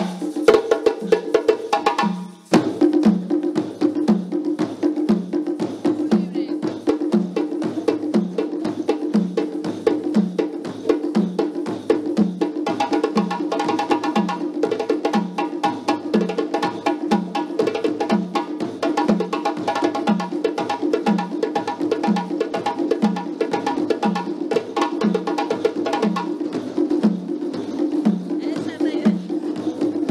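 Group hand percussion in a steady West African rhythm: a djembe played with the hands and standing dunun drums struck with sticks, layered with clicking claves and egg shakers. The texture grows fuller from about twelve seconds in.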